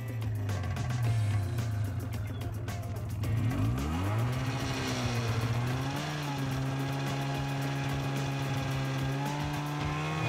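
Snowmobile engine running; about four seconds in its pitch dips and then climbs as the throttle is worked, then it runs steadily at a higher pitch.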